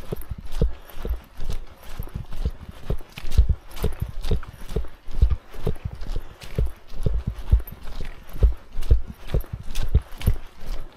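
A hiker's footsteps on a dirt trail strewn with fallen leaves, walking at a steady pace of about two steps a second.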